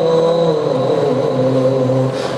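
A man's voice chanting one long held, wordless note through a microphone and loudspeaker, its pitch stepping slowly down and up.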